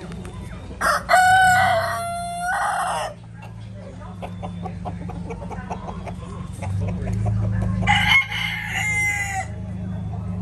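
Caged roosters crowing twice, one long cock-a-doodle-doo about a second in and another near the end, over a steady low hum.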